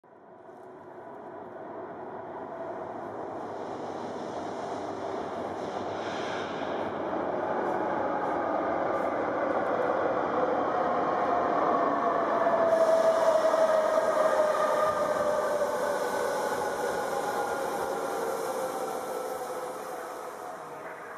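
Subway train running, heard from inside the car. The rumble fades in and builds, with a whine that falls slowly in pitch, and a hiss that grows suddenly about two-thirds of the way through.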